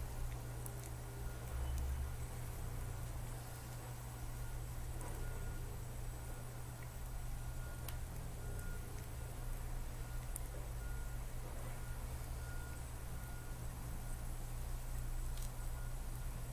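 Steady low hum with a faint, high beep that sounds on and off in short pips, and a few light clicks.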